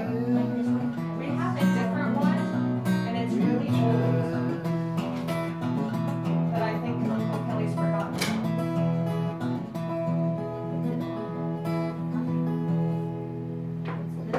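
Steel-string acoustic guitar strummed through the instrumental closing bars of a song.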